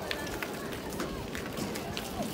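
Footsteps of a group of people walking on concrete, irregular short taps, with children's and adults' voices chattering in the background.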